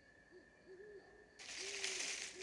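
An owl hooting: a series of short, low, soft hoots over night ambience. A steady hiss joins about one and a half seconds in.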